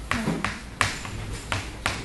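Chalk writing numbers on a chalkboard: a few sharp taps as the chalk strikes the board, with some scratching between them.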